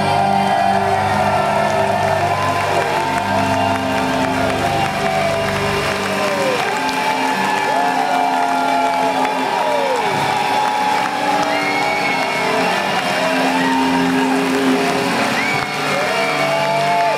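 Live rock band at the close of a song, heard over a cheering crowd. The low bass notes stop about six seconds in, leaving sustained and sliding higher notes.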